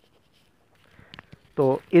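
Pen writing on paper: faint scratching strokes about halfway through, with one small tick among them.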